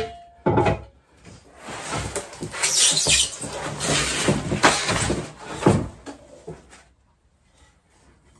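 Cardboard box and packing being handled: a knock about half a second in, then several seconds of rustling and scraping as a board is slid into the box and a metal plate is lifted out of its packing. It falls quiet near the end.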